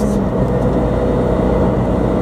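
Cabin sound of a 2013 Subaru WRX STI's turbocharged flat-four engine and Milltek cat-back exhaust while driving, a steady low drone. Just after the start the engine note drops as a gear is changed.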